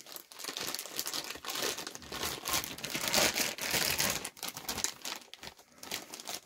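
Plastic packaging of a vacuum-packed item crinkling and rustling as it is handled and opened, busiest in the middle of the stretch.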